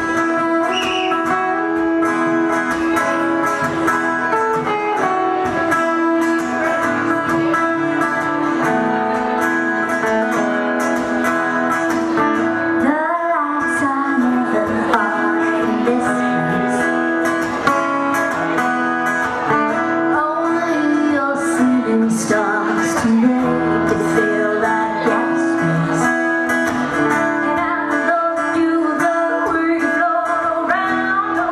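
Two acoustic guitars strummed and picked together in a live performance, with a woman singing over them.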